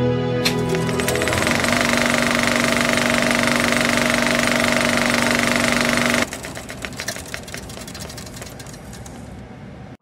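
A loud, rapid mechanical clatter with steady hum-like tones under it. About six seconds in it drops suddenly, and then thins out to scattered clicks before cutting off.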